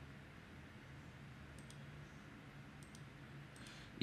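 Faint computer mouse clicks, a pair about one and a half seconds in and another about three seconds in, over a quiet steady hum of room and microphone noise.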